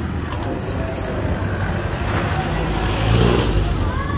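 Busy city street traffic with engines running, and a motor vehicle passing close that grows loudest about three seconds in.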